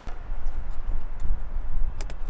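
Wind buffeting the microphone as a gusty low rumble, with a few faint clicks as the plastic switch panel is handled against the ammo-can lid.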